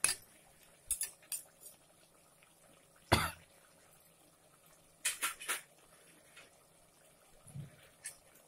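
A few short clinks and knocks of kitchen utensils against a metal cooking pot while spices are spooned into a curry, the loudest about three seconds in and a quick cluster about five seconds in.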